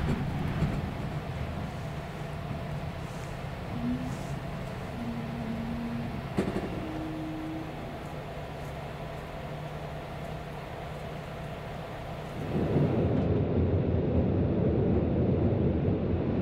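Steady low hum and rumble inside an XPT passenger train carriage at night, with three short, faint tones between about four and eight seconds in. About twelve seconds in the rumble becomes suddenly louder and fuller.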